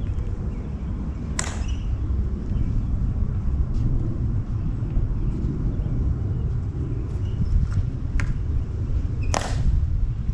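Outdoor low rumble of wind on the microphone, with a few sharp clicks, the loudest near the end.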